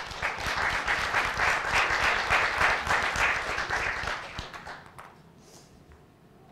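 Audience applauding: many people clapping, starting suddenly and dying away about four to five seconds in.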